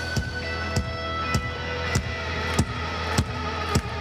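Live symphonic metal band in a sparse passage: sustained keyboard chords over a steady low drone, with a sharp hit on each beat, a little under two a second.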